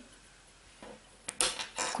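A brief pause in near silence with one small sharp click, then a woman's voice starting again near the end.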